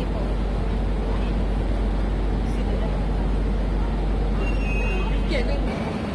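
SMRT MRT train running on the elevated track, a steady low rumble. A brief high-pitched squeal comes in near the end.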